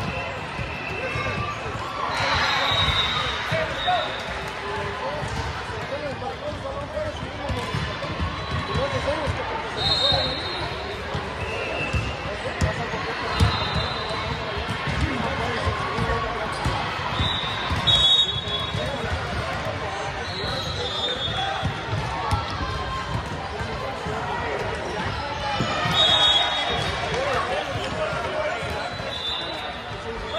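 Busy gym hall during volleyball play: a steady echoing hubbub of spectators' and players' voices, with thuds of volleyballs being struck and bouncing on the hardwood, and brief high sneaker squeaks on the court floor every few seconds.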